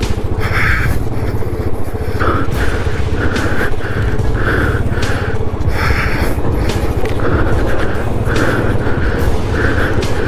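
Motorcycle engine running steadily as the bike rides through a shallow, rocky water crossing, with background music with a regular beat laid over it.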